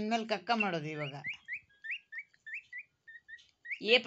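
Indian peafowl chick peeping: a run of short, rising chirps, about four a second, fainter than the woman's voice around them.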